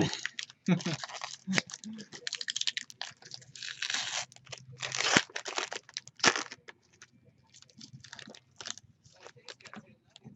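Foil wrapper of a baseball trading-card pack being torn open and crinkled by hand, in irregular crackly bursts that thin out after about seven seconds.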